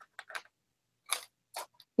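A few faint, light clicks and ticks, about five spread over two seconds, as small pieces of jewelry are handled and sorted.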